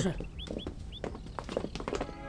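Soldiers' footsteps as a squad files out of a room, starting right after a spoken '是' ('yes'). A few short, high chirping animal calls sound behind them in the first second.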